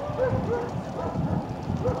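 A dog yapping: a handful of short, high barks spread through the two seconds.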